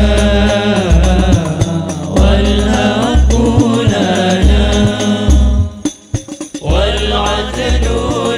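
Albanjari hadroh: a group of men singing sholawat together over deep, beating terbang frame drums. About six seconds in the voices and drums break off for under a second, then come back in together.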